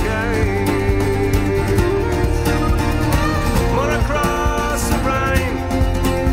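Irish folk band playing an instrumental passage of a song: melody lines over strummed acoustic guitar and a steady bass.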